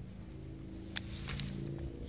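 A man's voice holding a low, steady, drawn-out 'I…' like a hum for most of the time, with one sharp click about a second in.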